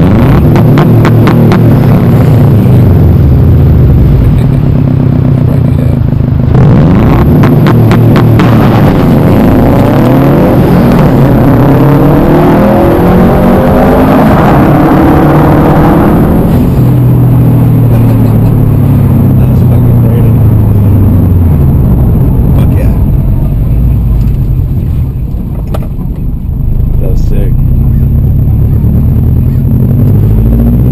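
2011 Subaru WRX STI's turbocharged flat-four running loud against its two-step launch-control rev limiter, stuttering with rapid regular cuts. The revs then climb for several seconds and fall away again.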